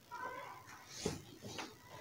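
A short, high, wavering call near the start, then a few soft knocks and rustles of cloth being handled, the loudest knock about a second in.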